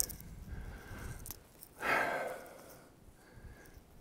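A man breathing hard from a steep uphill climb, with one loud, heavy exhale about two seconds in: he is winded.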